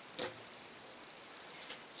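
A strip of quilting fabric laid down on a cutting mat: one short soft slap about a quarter second in, then a faint rustle near the end.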